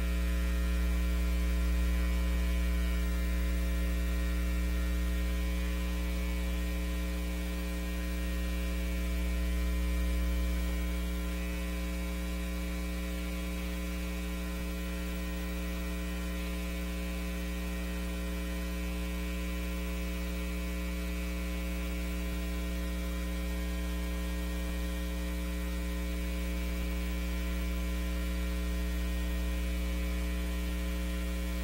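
Steady electrical mains hum with a stack of buzzing overtones, carried on the audio feed with nothing else over it.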